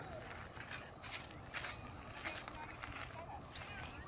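Light crunching and rustling on wood-chip mulch and dry sticks, short sharp crackles about every half second as people step about and handle sticks, with faint voices in the distance.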